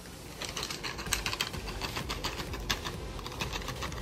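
Camera shutter clicking rapidly, several shots a second, as a burst of photos is taken; the clicks start about half a second in.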